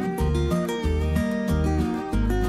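Instrumental background music led by guitar, with melody notes over a steady repeating bass beat.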